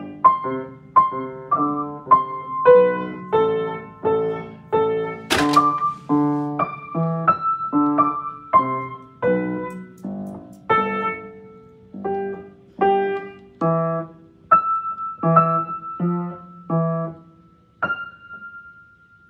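Upright piano played slowly and evenly, one melody note at a time at about one and a half notes a second, each with a lower note sounding under it: a beginner picking out a simple Christmas tune. There is a sharp click about five seconds in.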